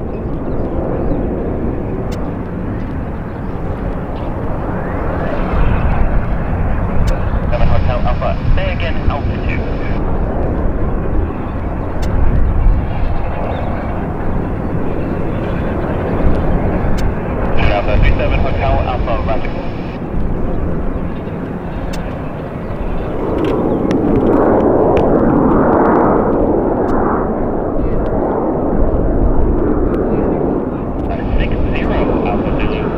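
ShinMaywa US-2 amphibian's four turboprop engines droning as it climbs away after takeoff, with voices heard over it.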